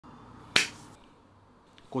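A single sharp snap about half a second in, short and loud against a quiet room.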